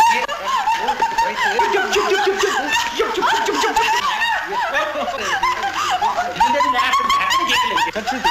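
A woman laughing wildly in high, shrill, bouncing fits, ending in one longer held cry near the end.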